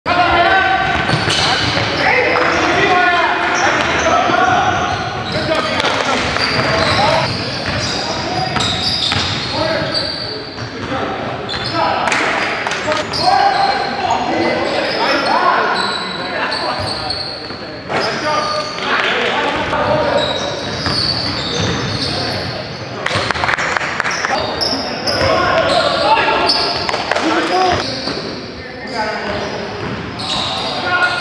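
Live basketball game on a hardwood gym court: the ball bouncing and thudding while players call out indistinctly, all echoing in a large hall.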